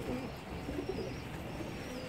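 Caged Teddy pigeons cooing faintly and intermittently.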